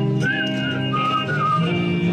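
Live band playing a song's intro: guitar chords with a whistled melody wavering over them.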